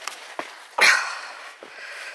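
A short, loud burst of breath noise about a second in, a huff or sniff from the person filming, among a few faint footstep clicks on the stony path.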